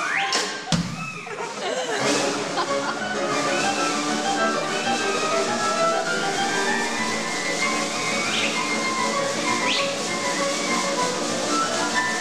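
Live cartoon accompaniment by a small percussion and piano ensemble. A rising whistle-like glide and a sharp hit come about a second in, then soft sustained chords run under repeated up-and-down swoops, with two quick upward glides near the end.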